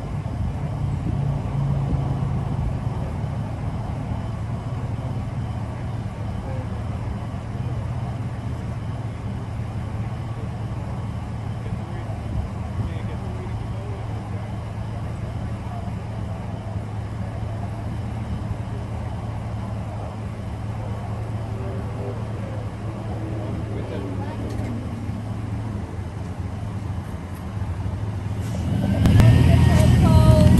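Pickup truck engine idling with a steady low hum, with faint voices now and then. Near the end it gets louder, with a raised voice over it.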